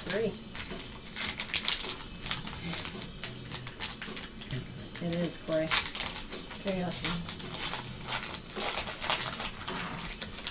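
Foil trading-card pack wrappers crinkling and tearing as packs are opened by hand, with quick irregular rustles and clicks throughout.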